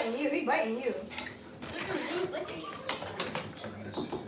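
Faint voices in the background with scattered light clicks and clinks, like small hard objects being handled.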